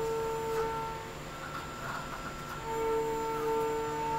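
SYIL X7 CNC mill's end mill cutting hex parts in aluminium, a steady high-pitched cutting tone over the spindle's hum. The tone drops away about a second in and comes back near the three-second mark.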